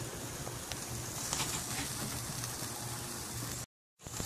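Steady sizzling hiss of meat cooking on a grill, with a few faint crackles. It cuts off abruptly near the end.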